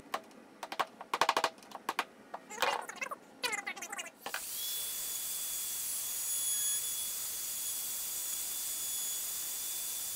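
A wood chisel working in a hinge mortise gives a string of short, sharp clicks and scrapes for about four seconds. Then an electric router runs steadily with a high whine, routing out the hinge mortise in the door edge.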